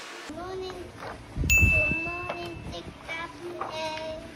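A young girl's voice talking and babbling, with a low thump and a bright, steady ding about a second and a half in that rings for about a second.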